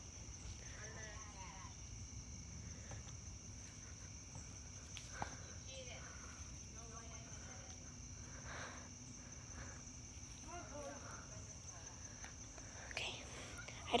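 Quiet outdoor ambience: faint distant voices come and go a few times over a steady high-pitched hum and a low rumble.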